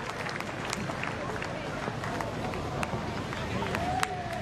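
Ground ambience at a cricket match: a steady murmur of the crowd of spectators, with a few faint scattered clicks.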